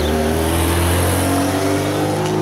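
A motor vehicle's engine running close by: a steady low engine note, rising slightly in pitch and fading away just after.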